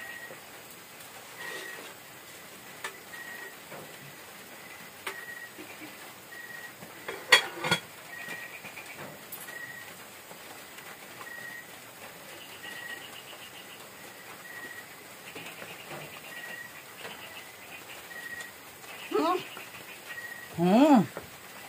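Metal ladle and pot lid knocking against a cooking pot twice in quick succession, about seven seconds in, while the meat is stirred and checked. Between the knocks the room is quiet, apart from a faint short tone repeating about once a second.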